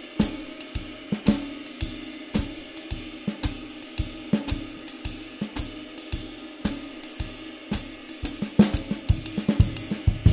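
Jazz drum kit playing swing time with the ride cymbal as the loudest voice, the hi-hat next, the snare played quietly on two and four and the bass drum feathered as lightly as possible. Near the end comes a burst of quicker, louder hits.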